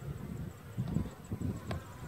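Honey bees buzzing around an opened mini mating nuc as a frame is lifted out, with a single sharp click near the end.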